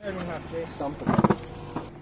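Indistinct voices of a few people talking in the background, with a short rapid cluster of sounds about a second in.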